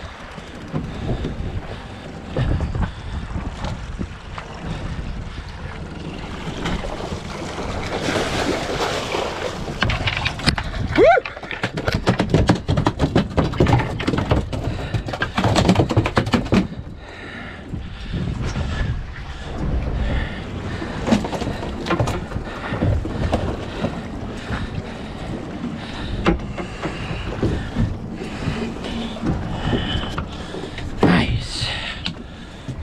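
Wind buffeting the microphone over water lapping at a small fishing boat's hull, with a dense run of knocks, clatter and splashing partway through as a California halibut is gaffed at the side and hauled aboard.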